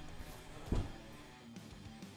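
Quiet background music with guitar, and one soft knock about three quarters of a second in.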